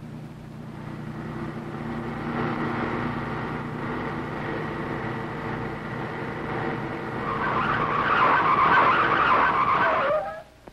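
Car engine running and growing louder. In the last two and a half seconds comes a loud, wavering tyre screech as the car skids under hard braking, cutting off suddenly at the end.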